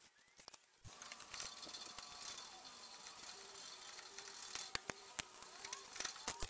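Faint scraping of a razor blade over window glass, lifting old urethane glue residue, with a thin squeak and scattered small ticks. It begins about a second in.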